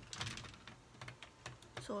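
A few light clicks and taps, clustered in the first half second and sparser after, like small objects being handled.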